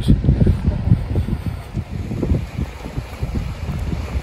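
Wind buffeting a handheld camera's microphone: an uneven, gusty rumble that eases a little about halfway through.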